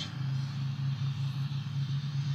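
A steady low hum with a faint even hiss, the background noise of the recording with no speech over it.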